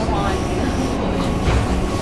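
Steady low hum and rumble inside a Taiwan Railway EMU500 electric multiple unit standing at a station platform, with voices in the background.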